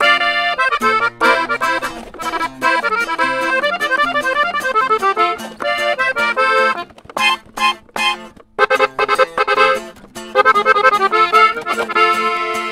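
Gabbanelli button accordion playing a lively norteño instrumental intro with fast runs of melody, backed by guitar. The playing breaks off briefly about seven and eight and a half seconds in.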